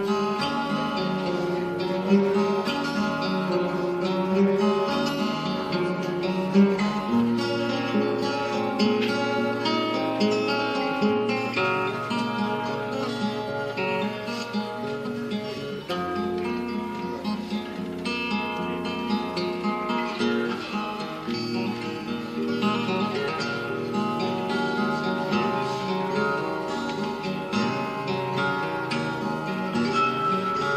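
Two acoustic guitars playing a slow, continuous instrumental passage, with sustained low bass notes that change every few seconds.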